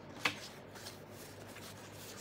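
Glossy oracle cards being leafed through by hand: one sharp card snap about a quarter second in, then a few faint flicks as the cards slide past each other.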